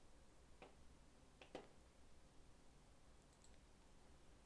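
Near silence with two faint, short clicks from working a computer, about half a second and a second and a half in.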